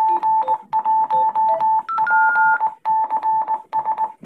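Yaesu DR-1X repeater sending its Morse code station identification: a steady beeping tone keyed in short and long pulses over a faint hiss, with a brief higher tone about two seconds in. It is the repeater's automatic ID, which it sends every three minutes.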